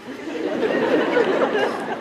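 Many voices of a hall audience talking at once, rising about half a second in.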